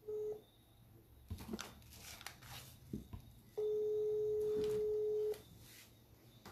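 Telephone ringback tone of an outgoing call: a short single-pitched beep right at the start, then the same steady tone held for nearly two seconds in the second half. Soft clicks and knocks fall between the tones.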